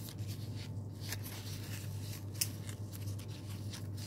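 Rustling and crisp creasing of a stiff white strip being pleated by hand, with scattered small ticks and one sharper click about two and a half seconds in, over a steady low hum.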